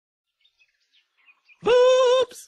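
Near silence for about a second and a half, then a single held vocal call with a steady pitch, lasting about half a second, dubbed onto a hare opening its mouth.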